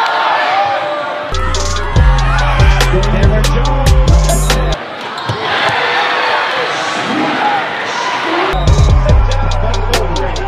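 A basketball bouncing on a gym floor amid voices, with music that has a heavy, blocky bass line; the bass comes in about a second in, drops out about halfway through and returns near the end.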